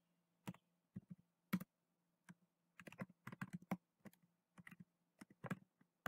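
Typing on a computer keyboard: irregular keystrokes, several in quick runs with short pauses between.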